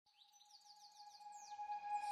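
Faint bird chirps, a quick run of short falling tweets, over a steady held tone, growing louder. The tone carries straight on into the music that follows, so this is the opening of an added music track rather than live birds.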